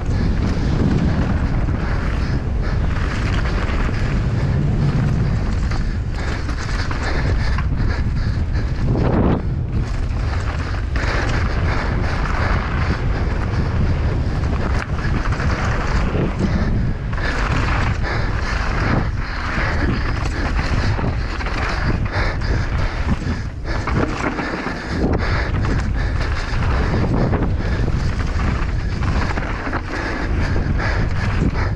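Wind rushing over the microphone of a rider-mounted action camera as a downhill mountain bike runs fast down a dirt and gravel track. Tyres roll over the loose surface and the bike rattles over bumps, with frequent brief jolts in the noise.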